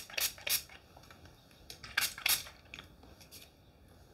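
Short hisses of hairspray spritzed from a pump spray bottle: a few quick sprays in the first second, then two more about two seconds in.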